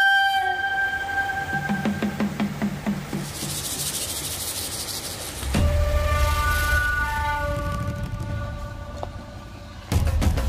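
Edited intro soundtrack: a flute line fades out, a hiss swells, then about halfway through a louder section begins with a held, horn-like chord over a low steady rumble.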